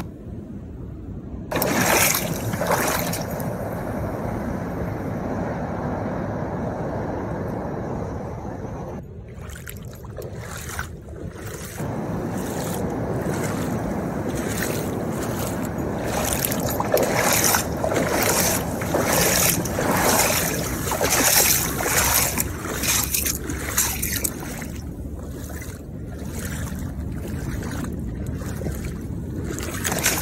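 Feet in sandals wading through shallow seawater, an irregular run of splashes and swishes over a steady rush of wind and water, quieter for a few seconds about a third of the way in.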